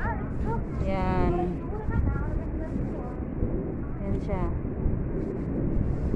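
Voices of people talking nearby in short snatches, none of it clear, over a steady low rumble of background noise.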